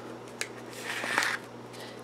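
120 roll film rustling and scraping as it is wound by hand onto a stainless steel wire-spiral developing reel, with a light click about half a second in. The film has gone on off-centre and is starting to kink against the reel's wires.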